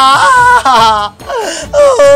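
A person wailing loudly in drawn-out, theatrical cries, the pitch bending up and then sliding down, with a short break a little past the middle before another falling wail.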